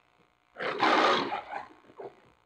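A lion roaring once in the MGM logo, played back from a VHS tape: one loud roar of about a second starting half a second in, then a short, weaker grunt at the end.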